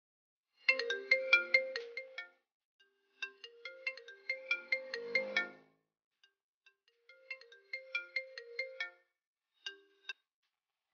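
Mobile phone ringtone signalling an incoming call. A short melody of quick notes plays three times, with pauses between.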